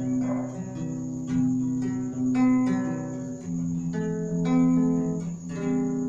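Instrumental intro of a song on plucked strings: chords struck about once a second and left ringing, with no voice.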